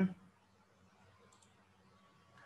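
Two faint, quick computer clicks about one and a half seconds in, from someone typing and editing a document, after a short spoken 'mm-hmm' at the very start.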